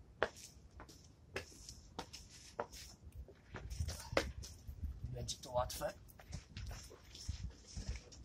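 Clothing rustling, with scrapes and knocks against wooden beams, as a person squeezes through a narrow gap, and low thumps of the camera being bumped. A brief strained vocal sound comes about five and a half seconds in.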